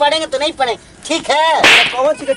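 Excited speech, then a short sharp whip-like swish near the end that stands out as an added sound effect, louder than the voices.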